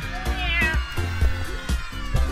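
Background music: a song with a steady drum beat and deep bass. A high, wavering pitched sound bends up and down over it in the first second.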